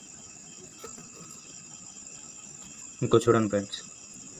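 Low background with a steady high-pitched buzz. About three seconds in, a man's voice makes a short sound or word lasting about half a second.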